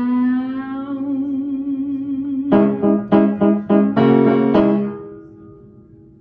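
A woman's sung final note, held with vibrato over upright piano. About two and a half seconds in, several struck piano chords follow, ending on a last chord that rings and fades away.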